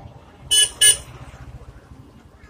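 Two short, loud horn toots, the first about half a second in and the second a third of a second later, over a steady low hum.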